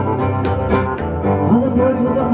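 Live indie rock band playing between sung lines: strummed acoustic guitar, electric guitar and keyboards with drum and cymbal hits. A bending melody line comes in about one and a half seconds in.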